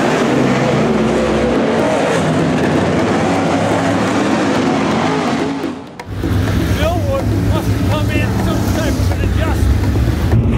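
Dirt super late model race car engines running on the track, the engine note rising and falling, until a sudden break about six seconds in. After that, voices are heard over a steady low engine hum.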